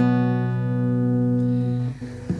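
Closing chord of a bağlama (long-necked Turkish saz) ringing out and slowly fading after the final strokes of a folk song, then cut off sharply near the end.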